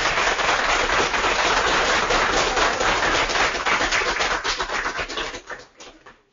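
Audience applauding, a dense patter of claps that thins to scattered claps after about four and a half seconds and dies away just before the end.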